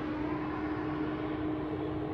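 Steady outdoor background noise with a constant low hum, no distinct events.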